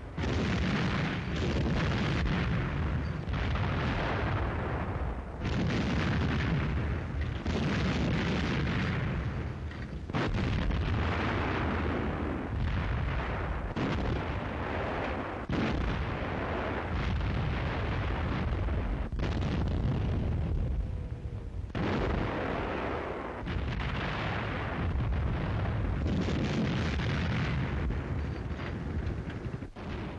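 Artillery firing in a sustained barrage, a fresh boom about every two seconds, each rolling into the next with no pause.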